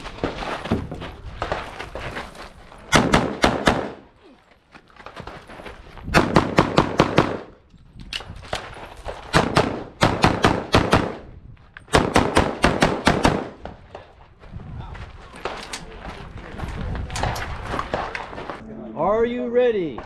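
Competition pistol fired in about six quick strings of several shots each, with short pauses between strings.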